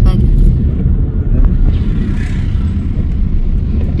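Steady low rumble of a car driving, the engine and road noise heard from inside the cabin.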